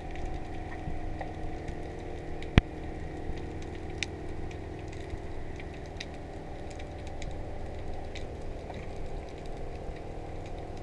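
Underwater ambience heard through a waterproof camera housing: a steady low drone with a scattered crackle of small sharp clicks, typical of snapping shrimp on a rocky reef. One single sharp click, much louder than the rest, comes about two and a half seconds in.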